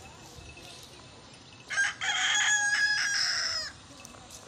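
A rooster crowing once near the middle: a short opening note, then one long call that falls in pitch at its end.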